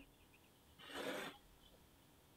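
A single short, soft breath through the nose, about a second in, with near silence around it.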